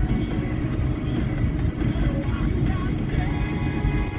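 Road and engine noise inside a moving car's cabin: a steady low rumble, with music playing faintly over it.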